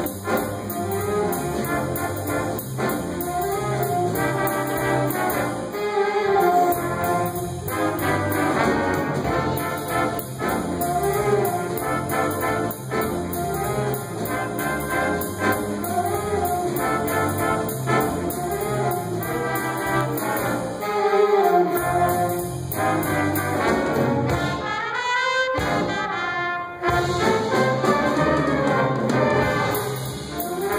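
A high school jazz big band playing a jazz chart, brass section with trombones and trumpets to the fore, over saxophones, piano and drum kit.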